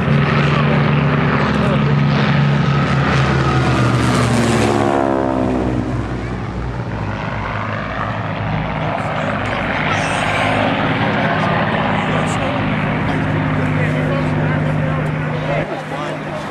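A P-51D Mustang with its Merlin V12 and an SNJ-4 with its radial engine fly a low pass together. Their propeller-engine drone drops sharply in pitch about five seconds in as they go past, then carries on steadily as they climb away.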